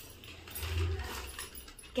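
Faint handling sounds of a necklace being fastened at the back of the neck: rustling and small clicks of the clasp, with a soft low bump about half a second in.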